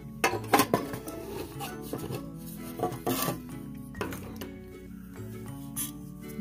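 Several light metallic clinks and knocks as a small square Coleman metal pot with a pot gripper clamped on it is handled, most of them in the first second. Steady background music plays underneath.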